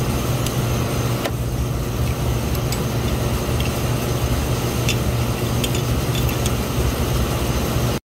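Steady low hum of rooftop refrigeration equipment running, with a few faint metallic clicks from a copper swaging tool being handled.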